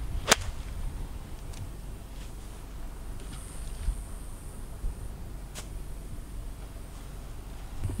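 A golf swing with a 7-iron: one sharp crack of the club striking a ball sitting down in wet rough, about a third of a second in, followed by a low steady background rumble.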